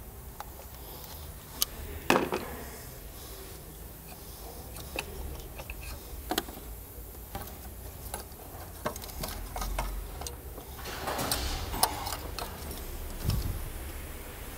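Scattered clicks, taps and light knocks of hand work in a car's engine bay: gloved hands and a hand tool handling plastic connectors and parts on top of the engine. The loudest knock comes about two seconds in, and there is a busier run of clatter near the end, over a faint steady low hum.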